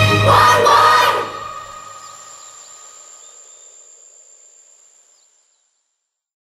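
A boy's voice and a choir sing a last "why" over the ballad's backing, breaking off about a second in. The final chord then fades slowly away to silence shortly before the end.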